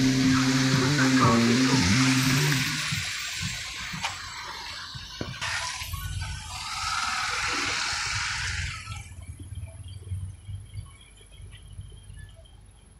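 Cars driving past on a wet road, their tyres hissing through the water. One passes at the start and another from about five and a half to nine seconds in, then it goes quieter.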